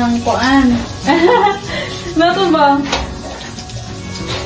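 A voice without clear words over background music, above the hiss of butter melting in a hot steel wok, with one sharp clink of metal tongs against the wok about three seconds in.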